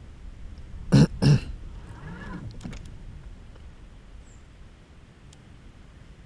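A man clearing his throat in two sharp bursts about a third of a second apart, about a second in, followed by a short soft hum.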